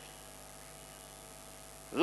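Faint, steady electrical mains hum with a light hiss from the microphone and sound system.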